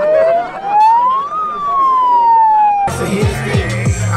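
A handheld megaphone's siren: one slow electronic wail that rises, peaks about a second and a half in, falls, and cuts off suddenly near the three-second mark. A hip hop beat with deep sliding bass comes in as it stops.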